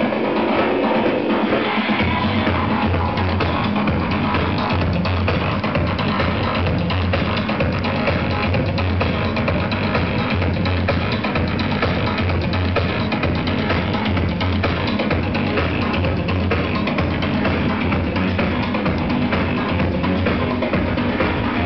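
Loud electronic dance music with a heavy drum beat, played live from a laptop over a club sound system; a deep bass line comes in about two seconds in.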